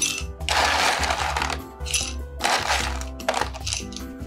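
Ice cubes clattering and clinking in several bursts as a plastic scoop digs them out of a plastic tub and tips them into a rocks glass, the longest rattle about half a second to a second and a half in. Background music plays throughout.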